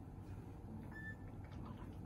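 Quiet room tone: a steady low hum with a few faint ticks, and a short faint high beep about halfway through. The piano is not being played.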